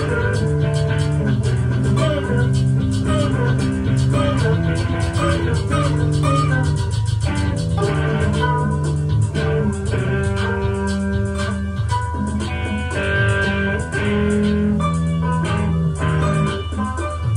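Live improvised instrumental music: sustained melodic notes changing every second or so over a steady low bass, with fast ticking percussion throughout.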